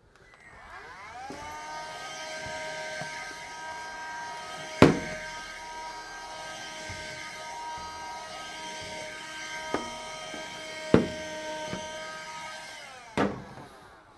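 A small electric motor hums steadily for about twelve seconds. It settles into its steady pitch in the first second after it starts and winds down near the end. A few sharp knocks land over it, the loudest about five seconds in.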